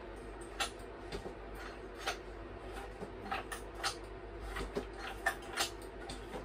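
Scattered light clicks and knocks, about a dozen at irregular intervals, from handling around a small pull-start dirt bike whose engine has failed to start and is not running.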